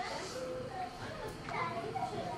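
Faint background voices in the room, short scattered bits of talk, with what sounds like a child's voice among them.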